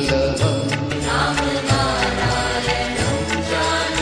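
Instrumental interlude of a Hindi Krishna bhajan: a melody over held low bass notes and a steady percussion beat.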